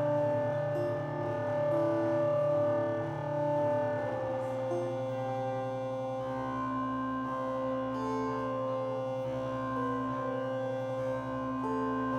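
Live drone music: electric guitar through effects pedals and keyboards holding layered, sustained tones. The notes shift slowly in the first few seconds, then settle into a steadier held chord from about halfway.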